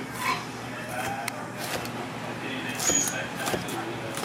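Chef's knife slicing a scotch bonnet pepper, the blade clicking sharply against the cutting board several times at an uneven pace.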